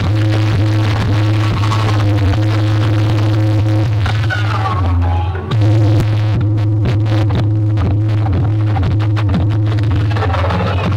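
Bass-heavy electronic DJ music played very loud through a large outdoor DJ sound system, the bass constant and distorted under a steady beat. The music dips briefly about halfway through and comes back louder.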